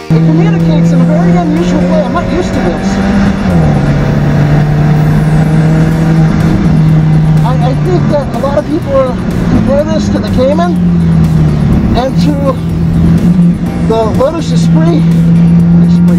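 Alfa Romeo 4C's turbocharged four-cylinder engine running hard at high, nearly steady revs on track, its pitch dropping and climbing again between gears. Short chirps come through about halfway and again near the end.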